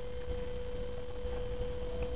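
A steady, unwavering single-pitched tone over a low background rumble.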